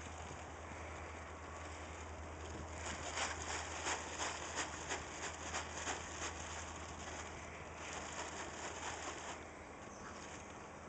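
Plastic tarp rustling and crackling as it is moved over and down a saddled horse's side, with a run of sharp crackles from about three seconds in to about seven seconds, then softer rustling.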